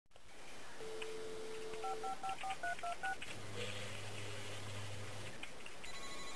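Touch-tone telephone being dialled: a steady dial tone for about a second, then seven quick keypad beeps, then a low steady hum for about two seconds.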